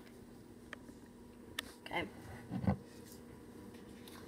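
A few faint clicks and handling noises from a plastic honey squeeze bottle as its cap is opened, over a quiet kitchen with a faint steady hum.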